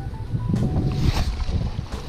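Wind rumbling on the microphone over lake water, with a splash about a second in as a hooked brown trout is scooped into a landing net. Faint music sits underneath.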